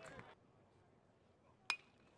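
Near silence, then a single sharp metallic ping near the end: a college batter's metal bat hitting the ball.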